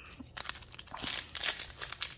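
Foil trading-card pack wrapper crinkling as it is torn open by hand, a busy run of irregular crackles starting about a third of a second in.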